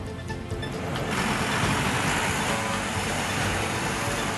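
Background music with a steady rushing noise that comes in about a second in and holds to the end.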